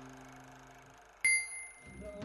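A held musical chord fades away, then a single bright bell ding about a second in rings and dies away.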